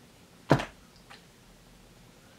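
A single sharp click about half a second in, followed by a much fainter tick, over quiet room tone.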